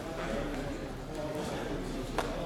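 Voices of people talking around a grappling mat, with a few faint knocks.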